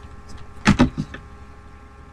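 Paper and plastic sticker sheets being handled on a desk: a few light clicks and rustles, with a louder double knock about two-thirds of a second in.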